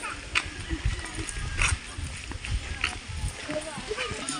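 Footsteps on a concrete path, a low thud about every half second with a few sharper scuffs, under faint background voices.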